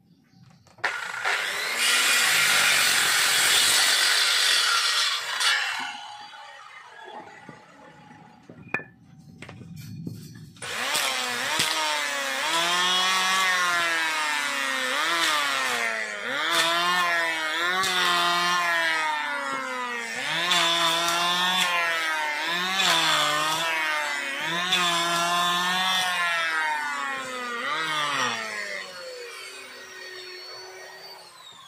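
Electric circular saw cutting through a wooden plank for about four seconds. After a pause, an electric hand planer shaves a wooden block in repeated passes, its motor pitch dropping under load on each pass and rising again between them.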